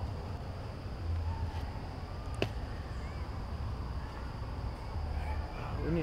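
Outdoor ambience: a low rumble and a steady high-pitched hum, with one sharp click about two and a half seconds in.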